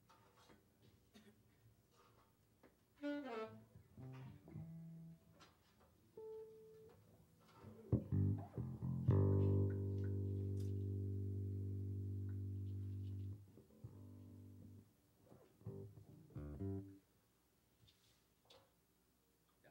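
Electric bass and saxophone playing scattered notes and short runs rather than a tune, with a falling run about three seconds in and a low note held for about four seconds in the middle.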